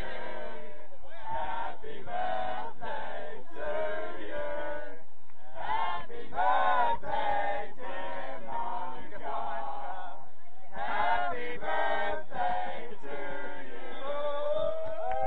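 A group of voices chanting together in short, rhythmic sung phrases, with brief pauses about five and ten seconds in.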